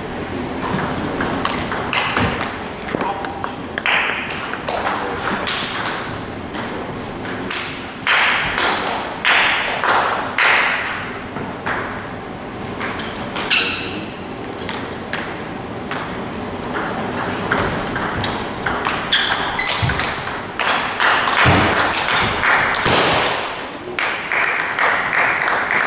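Table tennis ball clicking off bats and the table in rallies, short sharp ticks coming and going through the whole stretch, with people's voices in the background.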